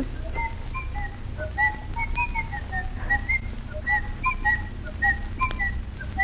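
A man and a boy whistling a tune in short, hopping notes, fairly faint as if heard approaching from outside the room.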